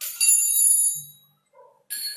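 A high metallic bell rings once and dies away over about a second.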